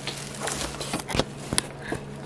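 Thin plastic grocery bags rustling and crinkling as items are taken out of them, with two short sharp knocks in the second half.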